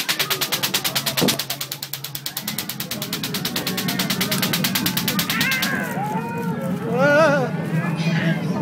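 A fast pulsing buzz of about nine pulses a second over a low steady hum, stopping after about five and a half seconds. Wavering high voice-like wails follow, the loudest rising and falling near the end.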